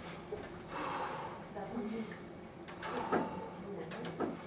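Short, indistinct vocal sounds in a small room, a few separate utterances about a second in, around two seconds and near three seconds.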